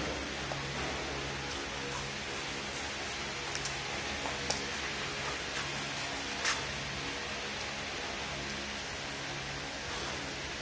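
Belt conveyor with a pop-up lifter running: a steady hiss over a low hum that swells and fades a little more than once a second. A few brief sharp clicks come through, the loudest about six and a half seconds in.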